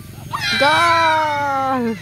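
A person's long drawn-out shout, starting about half a second in and held for about a second and a half, sinking slightly in pitch at the end: a celebratory cry of 'goal' as the ball goes into the net.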